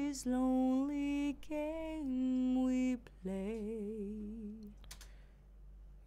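Isolated female lead vocal track played back dry and unprocessed, with no effects, singing three long held notes. The last note wavers with vibrato, and the singing stops about five seconds in.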